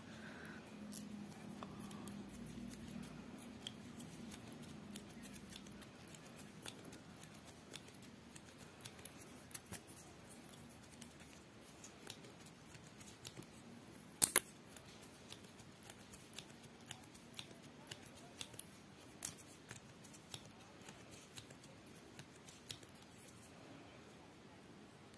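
Faint, irregular small clicks and ticks of a tatting shuttle and thread being handled as a plain chain of stitches is worked, with a sharper click about fourteen seconds in and another about nineteen seconds in.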